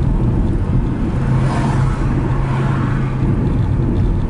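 Road noise inside a moving car: a steady low rumble of engine and tyres, with a low hum standing out from about one to three seconds in.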